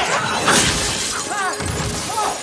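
Film soundtrack of a monster attack: crashing, shattering impacts at the start and about half a second in. High gliding shrieks follow, and a tense music score holds a low note underneath.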